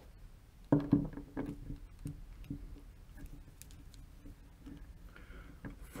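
Light, irregular clicks and ticks from a hand tool with a Torx bit turning the adjustment screw of an automatic-transmission solenoid, counted out turn by turn as it is screwed down.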